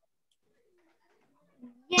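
Near silence with faint low sounds, then a child's voice beginning to answer just before the end.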